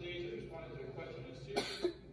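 Indistinct speech, then a short cough near the end.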